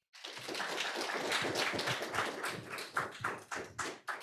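Audience applauding: many hands clapping together in a dense patter that starts at once and thins to scattered claps near the end.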